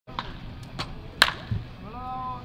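A baseball bat hitting a ball with a sharp crack about a second in, the loudest sound, after a few fainter cracks, followed by a dull thump.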